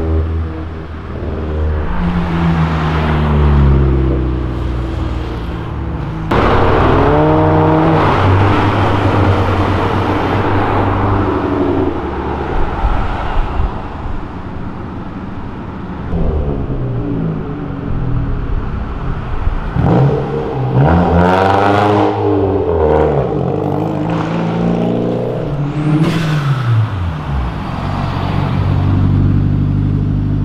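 Several cars' engines revving as they accelerate away on a street, each rev rising and falling in pitch through the gears. A hard acceleration starts suddenly about six seconds in, more sweeping revs come around twenty seconds in, and a steadier low engine note sounds near the end.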